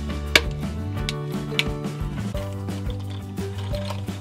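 Plastic surprise-egg capsule clicking sharply as it is twisted and pulled open, the loudest click about a third of a second in, over background music with a steady beat.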